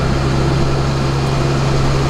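Yard truck (terminal tractor) engine running, heard from inside the cab as a steady low drone.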